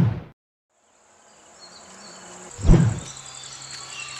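A deep thud at the start, then a steady high-pitched insect drone that comes in under rising outdoor ambience. A second loud deep thud comes about two and a half seconds later.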